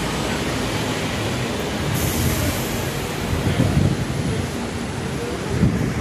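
Steady rumble of road traffic passing on a busy city street, swelling slightly for a moment about two-thirds of the way through.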